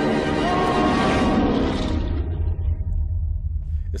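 A steady low rumble, with music and a voice from the show's soundtrack fading out over the first two seconds.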